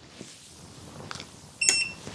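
EcoFlow Delta 2 portable power station giving one short, high electronic beep with a click about one and a half seconds in, as its output is switched off remotely from the phone app.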